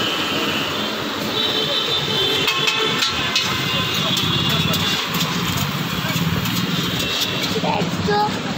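Steady traffic noise of a busy city road: engines and tyres of passing cars, motorbikes and buses. A thin high tone sounds for a few seconds in the first half.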